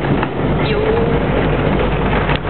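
Steady low rumble of a small car's engine and tyres heard from inside the cabin while driving.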